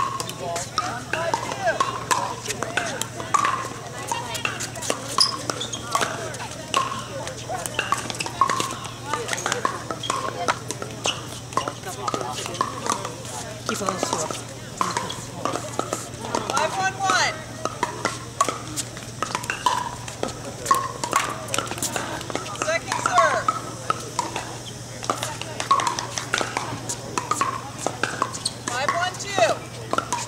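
Indistinct chatter of many people around the courts, with scattered sharp pops of pickleball paddles striking the plastic ball, over a steady low hum.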